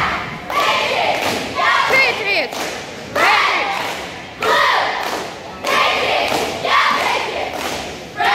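Cheerleading squad shouting a cheer in unison, in rhythmic phrases about a second apart, with thuds on the beat, echoing in a large gym.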